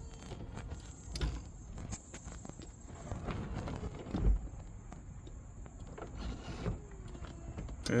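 Mercedes CLK 500 (W209) power soft top lowering: its hydraulic pump runs while the top folds away, with clunks as the mechanism moves, the loudest a thud about four seconds in.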